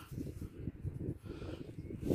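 Faint, irregular scuffing of fingers rubbing damp soil off a freshly dug button, with a low rumble of handling or wind on the microphone.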